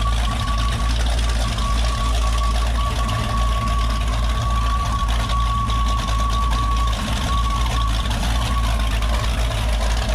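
Twin Mercury Racing 525 EFI big-block V8 sterndrive engines idling steadily, heard up close from the open engine bay. A thin steady whine rides over the engine sound and drops away about eight or nine seconds in.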